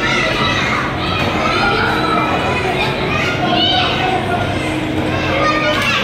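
Several voices, children's among them, chattering and calling at once over a steady low hum.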